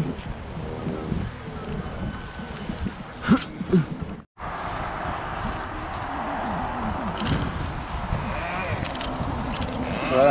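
Wind noise on the microphone, a steady rushing haze, with a few short sharp clicks. The sound drops out briefly about four seconds in.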